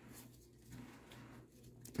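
Faint rustling of nylon sling webbing and its Velcro one-wrap being handled, in a few soft scrapes.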